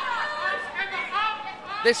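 Indistinct voices chattering, with a commentator's voice starting near the end.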